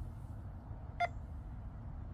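A phone lottery app beeps once, short and high, about a second in, as it reads a scratch-off ticket's barcode. A low, steady room rumble runs under it.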